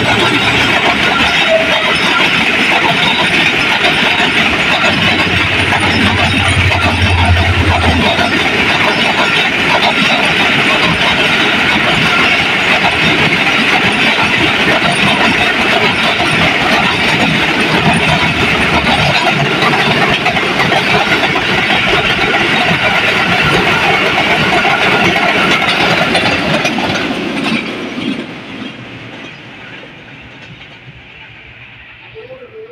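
A Pakistan Railways express passenger train passes close by. A diesel locomotive's engine drone is heard for the first several seconds. Then a long rake of coaches rolls past with a steady loud clatter of wheels on the rails, fading away over the last few seconds as the train goes by.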